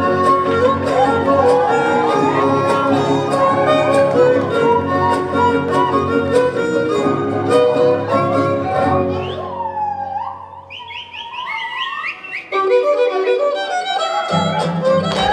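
Huasteco huapango music: a violin leads over a steady strummed accompaniment. About ten seconds in, the accompaniment drops out and the violin plays alone with quick rising slides. The full band comes back in just before the end.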